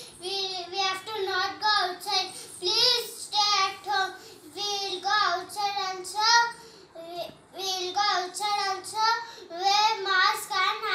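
A young boy's voice chanting words in a high-pitched sing-song, phrase after phrase with a brief pause about seven seconds in.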